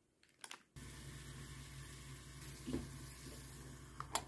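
Faint, steady sound of water running from a kitchen tap, starting abruptly about three-quarters of a second in, after a couple of faint clicks.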